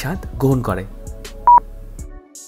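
Quiz countdown timer beep: one short, loud electronic tone about a second and a half in, over quiet background music. A woman's voice finishes speaking in the first second.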